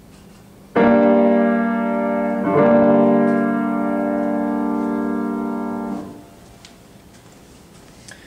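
Piano sounding the starting pitch for a G minor sight-singing exercise: a note struck, then a second note added over it, held together for a few seconds and then cut off.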